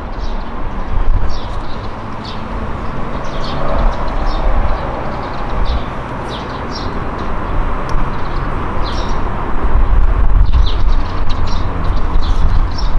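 Outdoor background: an uneven low rumble with short high chirps of birds calling scattered throughout.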